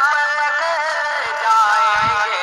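A naat, an Islamic devotional song, sung with a melody that wavers through ornamented turns.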